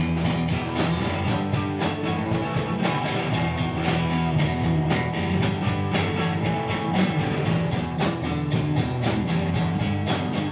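Live rock band playing an instrumental passage led by electric guitars, with a drum strike about once a second.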